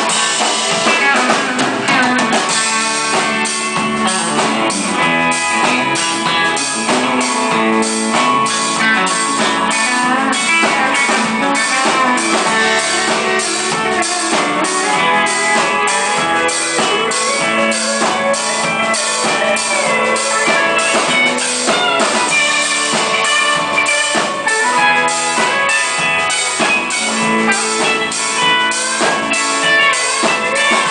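Live band playing an instrumental passage with no singing: electric guitars over a drum kit keeping a steady beat, with some sliding notes in the guitar lines.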